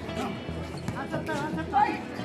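Background voices and music around a basketball court, with a few sharp knocks from play on the court.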